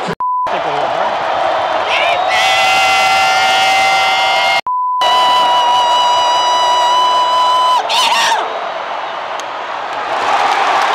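Stadium crowd noise under a long held yell, with a steady censor bleep tone cutting in twice: a short one at the very start and a longer one of about three seconds midway, each just after a brief dropout.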